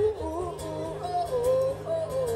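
Male singer vocalising "ooh, ooh" in a few held, sliding notes over a strummed acoustic guitar.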